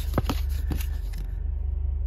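Heavy diesel truck engine idling with a steady low rumble heard inside the cab. Trading cards are shuffled in the hand, giving a few light clicks in the first second.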